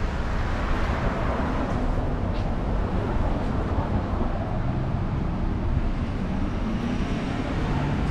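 Street traffic: cars driving past with a steady rumble of engines and tyres.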